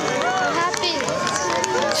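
A crowd of eclipse watchers cheering and shouting excitedly as the annular eclipse reaches its ring of fire, many voices overlapping.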